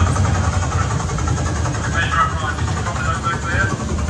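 Loud, steady rumble of a helicopter engine and rotor from a display's soundtrack played over speakers, with voices over it.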